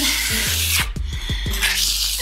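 Small trowel scraping across damp earthen plaster on a wall, two long rough strokes with a short break just before the second, over background music.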